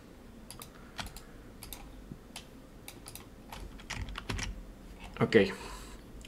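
Computer keyboard typing: scattered, irregular keystrokes and clicks.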